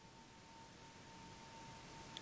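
Near silence: room tone with faint hiss and a thin, steady high-pitched tone.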